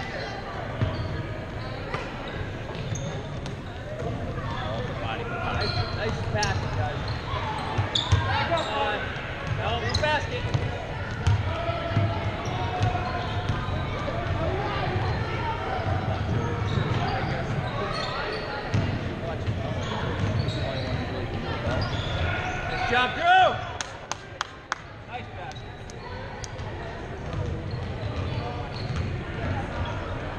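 A basketball bouncing on a hardwood gym floor amid the echoing voices of players and spectators. A brief, louder burst of sound comes about three-quarters of the way through.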